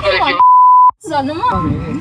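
A censor bleep: one steady, loud, high beep about half a second long that replaces a word of speech, with talk just before and after it.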